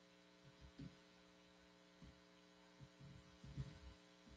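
Near silence: a steady electrical hum, broken by a few soft low thumps, the loudest about three and a half seconds in.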